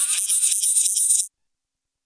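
A fast, high rattle like a shaker, pulsing about eight times a second. It cuts off abruptly just over a second in and is followed by dead silence.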